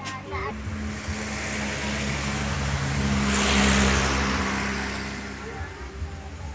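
A motor vehicle passing on the road: its engine hum and tyre noise build up, are loudest about two-thirds of the way through, then fade away.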